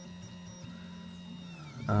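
A Reach 3D printer's stepper motors hum with steady tones as the print head moves while printing, a tone sliding down in pitch near the end.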